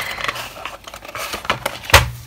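Cardboard packaging of a watercolour set rustling and scraping as the inner box is slid out of its sleeve. Small clicks run through it, and a sharp knock comes just before the end.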